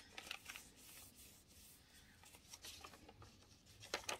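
Faint rustling and crinkling of a sheet of regular printer paper being folded diagonally into a triangle and creased by hand, with a few scattered soft crackles.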